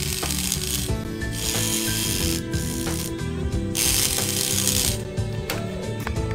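DC motor driving the K'nex claw's plastic gears to open and close its arms, a ratcheting, grinding run in three bursts, over background music.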